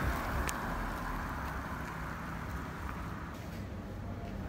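Car driving past on a street, its tyre and engine noise fading away over about three seconds over a low traffic rumble, with one short tick about half a second in.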